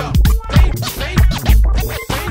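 Hip-hop track with a DJ scratching a record on a turntable, quick back-and-forth glides over a beat with a heavy kick drum about twice a second.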